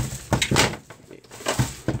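Handling noise from a small plastic portable guitar amplifier being slid and moved about on the bench: a sharp click at the start, then a handful of short knocks and rattles.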